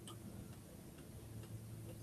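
Faint room tone: a low steady hum with faint ticks about a second apart.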